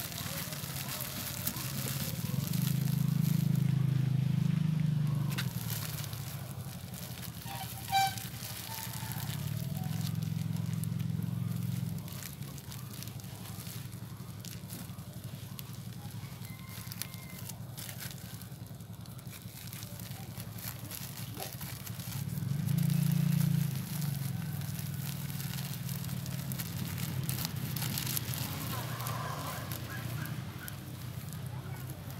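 Clear plastic bag crinkling and rustling as it is wrapped around a ball of rooting medium and tied off. Under it runs a low hum that swells louder three times.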